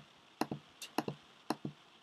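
Rapid computer pointer-button clicks, short sharp ticks in close pairs (press and release) about every half second, as app icons are clicked one after another.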